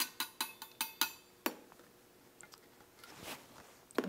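Copper jigger tapped against the rim of a copper cocktail shaker tin, giving about six light metallic clinks, roughly five a second, each ringing briefly, in the first second and a half. A soft rustle follows near the end.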